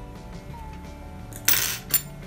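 Steady background music, with a brief loud metallic clatter about one and a half seconds in that ends in a sharp click.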